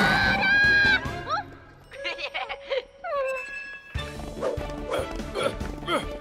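A cartoon girl's loud, drawn-out yell in the first second, followed by a few short sliding vocal sounds and effects, then cartoon background music from about four seconds in.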